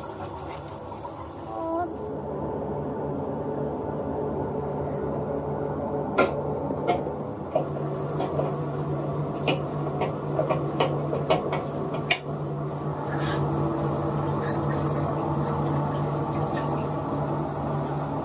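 A gloved hand wiping out the glass cooking cylinder of an herbal decoction machine: scattered light clicks and knocks against the glass and steel fittings, most of them in the middle of the stretch, over a steady low hum and hiss.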